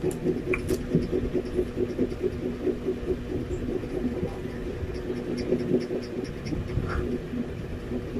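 A steady low machine hum runs throughout, with a few faint small clicks.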